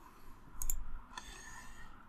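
A computer mouse button clicked once, a sharp tick a little over half a second in, over faint room noise.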